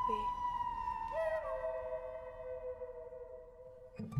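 Background music: a few long, pure held notes that step down lower about a second in and then fade away.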